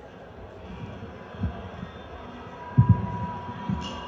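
A few low, dull thuds over faint stage noise, the loudest about three seconds in, with a thin steady high tone coming in just before it.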